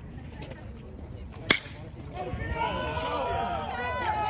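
Baseball bat striking a pitched ball: one sharp crack about a second and a half in, the hit of a home run. Shouting and cheering from players and spectators rise right after.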